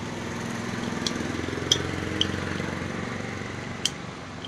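A desert-cooler motor's rotor turning in its freshly fitted bush: a low rattling hum that swells and then slowly fades, with a few light metal clicks.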